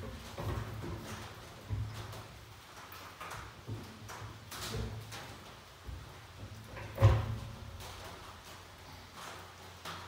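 Wooden honey frames clunking and knocking against a stainless steel Maxant radial honey extractor as they are handled in and out of its basket, in a handful of irregular knocks, the loudest about seven seconds in.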